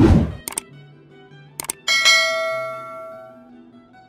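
Subscribe-button animation sound effects over soft background music: a whoosh at the start, a couple of sharp mouse clicks, then a bright bell chime about two seconds in that rings and fades away over a second and a half.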